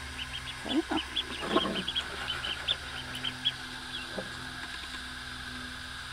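A group of ducklings peeping continuously: short, high peeps at about four a second, overlapping one another.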